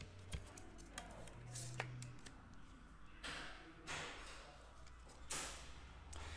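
Faint handling noises of a trading card in a rigid plastic holder being picked up and moved: light clicks and taps, with a few soft swishes a few seconds in.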